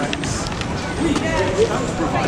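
Busy pedestrian street: passers-by talking, with footsteps on paving stones.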